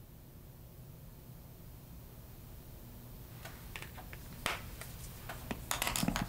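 Quiet room tone with a low hum, then a few light clicks and taps from about halfway on, the loudest one a little after four seconds and a cluster near the end: small makeup tools being handled and set down.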